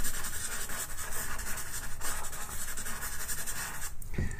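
Faber-Castell Pitt pastel pencil scratching across paper in rapid back-and-forth hatching strokes, laying mid-grey into a background.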